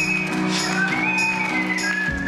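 Art whistling through a stage microphone: a single clear whistled melody line over a pop backing track with a steady beat. The whistled note slides up about a second in and settles on a lower held note near the end.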